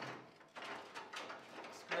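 Scraping and sliding of a new lined steel strap being worked around a truck's fuel tank, as several short scrapes in a row.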